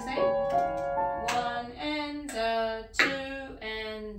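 Grand piano played note by note in a slow melody, with a woman singing the tune along from about a second in.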